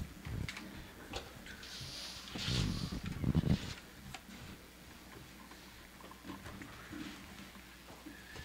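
Quiet room noise with scattered clicks and knocks as musicians move about the stage, with a louder muffled stretch about two and a half to three and a half seconds in.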